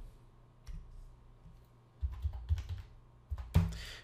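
Keys being typed to enter a division into a calculator: a few soft, separate clicks, with low thumps around the middle.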